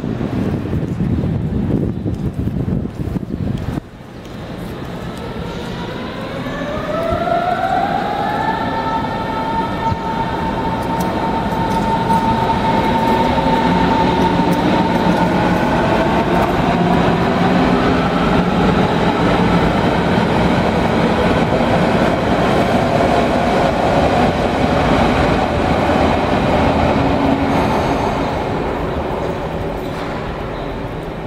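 An electric S-Bahn train's drive whining, rising in pitch from about five seconds in and then holding steady as the train gathers speed, over a steady low rumble.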